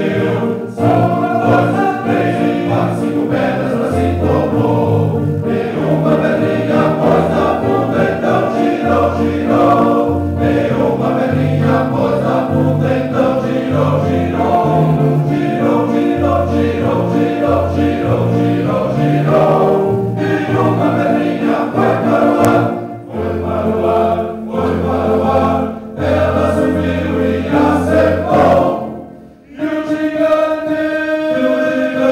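Men's choir singing a hymn in several voice parts, sustained phrases with short breaks between them, the longest near the end.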